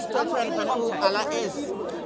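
Background chatter: several people talking over one another at low level, with no single voice in the lead.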